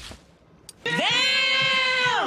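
A single long meow-like cry starting about a second in: it rises quickly, holds its pitch, and begins to fall away at the end.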